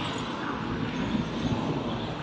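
Road traffic: cars passing on a city street, a steady low rumble of engines and tyres.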